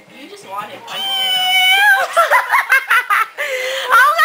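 Girls giggling and laughing: a drawn-out high vocal note, then a quick run of giggles.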